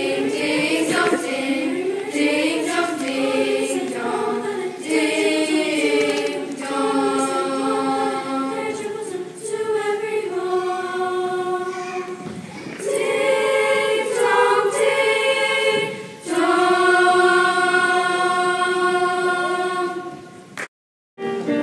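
Middle school chorus singing long, held notes in several parts at once, with short breaks between phrases and a long held chord in the last few seconds.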